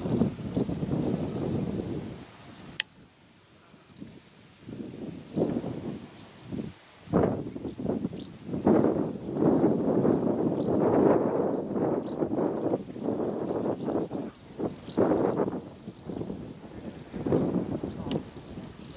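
Wind buffeting the camera microphone in irregular gusts, with a brief lull about three seconds in.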